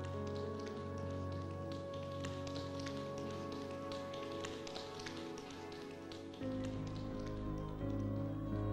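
Tap shoes clicking in quick, uneven runs of taps over music with held notes. About six and a half seconds in the taps stop and the music moves into a louder, deeper passage.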